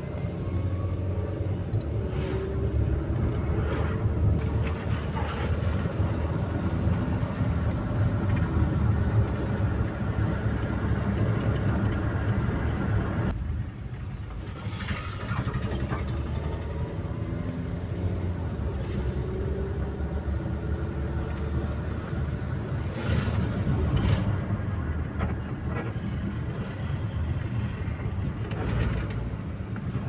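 Vehicle cabin noise while driving on a wet road: a steady engine and tyre rumble. About halfway through it suddenly drops in level, then builds back up, with a few light knocks later on.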